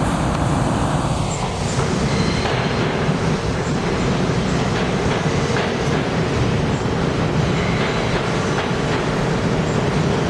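NYC Subway train entering the station and rolling past along the platform: a steady rumble of steel wheels on the rails, with repeated clicks as the wheels cross rail joints.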